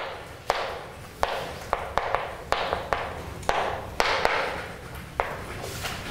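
Chalk writing on a blackboard: about a dozen sharp taps of the chalk against the board, each followed by a short scratchy stroke.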